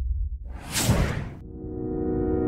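A whoosh sound effect sweeping through for about a second, after the low rumble of a booming hit fades out. Near the end, soft sustained musical tones come in.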